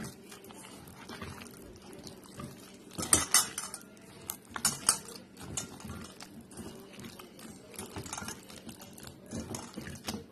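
A hand mixing butter-coated biscuit pieces in a stainless steel bowl: irregular knocks and clatters against the metal bowl, with the loudest bursts about three and five seconds in.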